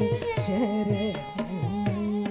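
A woman singing Carnatic classical vocal music: a moving phrase that settles onto a held note about halfway in. She is accompanied by low hand-drum strokes that fall in pitch, about four a second, over a steady drone.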